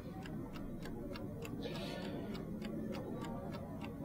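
Mechanical analogue chess clock ticking steadily, about four ticks a second, faint against room tone.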